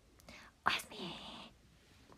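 A young woman whispering "oyasumi" (good night) once.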